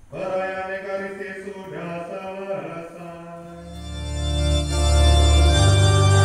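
Electronic keyboard playing held organ-style chords as a hymn begins; about four seconds in, a heavy bass comes in and the music gets much louder.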